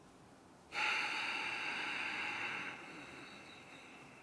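A long, deliberate breath drawn or blown hard through the mouth, demonstrating a breathing technique. It starts suddenly about a second in, holds strong for about two seconds, then fades away.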